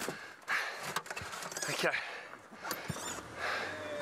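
A stalled open game-drive vehicle being bump-started: irregular rolling and knocking noise as it is pushed and the driver climbs in, then the engine catches about three seconds in and settles into a low steady running hum.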